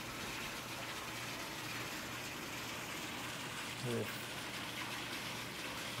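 Pool water feature running: water spills steadily from a stone wall into the swimming pool, making an even rush of falling water.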